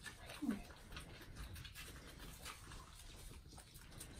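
A newborn animal's short, low cry about half a second in, over faint clicking and smacking from babies suckling at feeding bottles.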